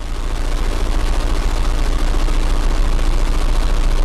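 Loud, even static noise, a TV-static glitch sound effect with a fine crackling texture and a faint steady hum underneath.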